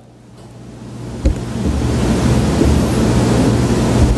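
A loud, steady rushing noise swells in over the first two seconds and then holds. A single sharp knock comes about a second in.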